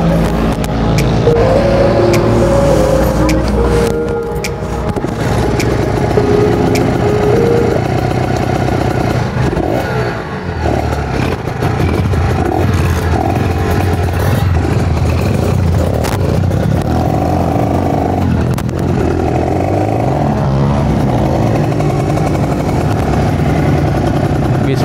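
Motorcycle engines idling and revving, with people's voices in the background.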